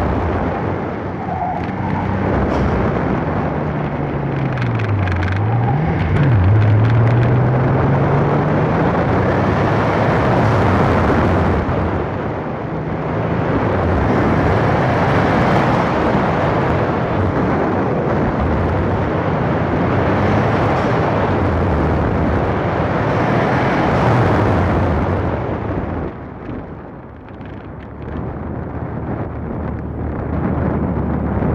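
Car engine driven hard through a cone course, its pitch rising and falling with throttle and dipping sharply about five seconds in before climbing again, under heavy wind rush on a hood-mounted microphone. It eases off and quietens near the end as the car slows.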